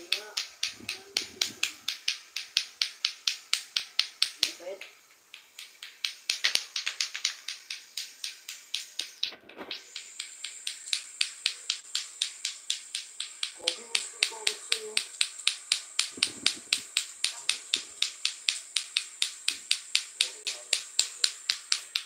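Lato-lato clacker balls clacking together in a steady rhythm, about three to four sharp clacks a second, with a short pause and a brief break before the rhythm picks up again. The clacking stops suddenly at the end.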